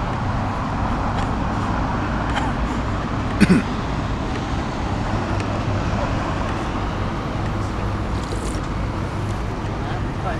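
Steady night-time city street noise: road traffic running, with indistinct voices. A single short, sharp clack about three and a half seconds in.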